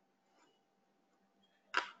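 Near silence: faint room tone with a low steady hum, broken near the end by one short burst of noise just before speech resumes.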